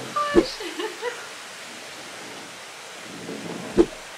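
Steady outdoor hiss of wind and water on a ship's deck, with a short knock near the end.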